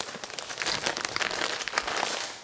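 Plastic packaging crinkling as it is handled, a dense run of irregular small crackles and clicks.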